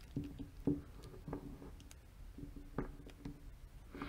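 Faint scattered clicks and light scrapes of a socket turning the adjusting screw in an Aisin AW55-50SN transmission shift solenoid. The screw has lost contact with its spring and turns loosely.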